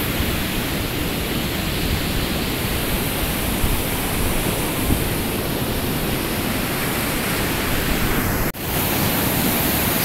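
Steady wash of heavy surf breaking on the beach, with a rumble of wind on the microphone; the sound drops out for an instant about eight and a half seconds in.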